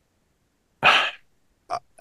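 A short, unpitched breathy sound from a person at the microphone about a second in, followed by a brief click near the end.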